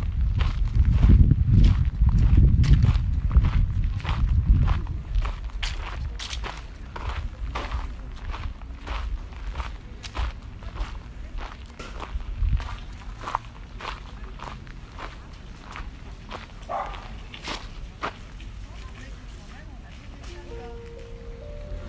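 Footsteps crunching on a gravel path at a steady walking pace, about two steps a second. A low rumble is strong in the first few seconds and then fades.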